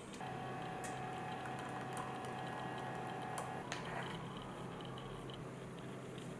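A small motor running with a steady whine over a low hum; the whine cuts off about three and a half seconds in, and a few light clicks sound along the way.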